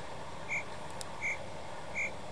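A short, high chirp repeating evenly, about once every three-quarters of a second, laid in as a sound effect over faint room tone.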